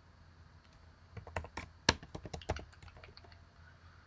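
Typing on a computer keyboard: a faint, irregular run of key clicks, the sharpest about two seconds in.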